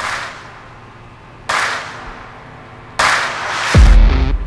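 Dramatic trailer-style sound effects: sharp, noisy hits with a reverberant tail about every second and a half, then a deep falling boom just before the end.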